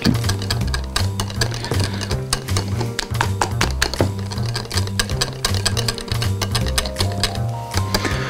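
Wire whisk beating thick pancake batter in a glass bowl: rapid, uneven clicking of the wires against the glass. Background music with a steady bass line runs underneath.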